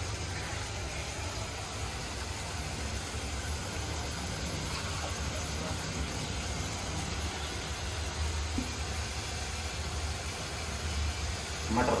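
Steady hissing background noise with a constant low hum underneath, typical of a kitchen with a burner or fan running; a word of speech comes in at the very end.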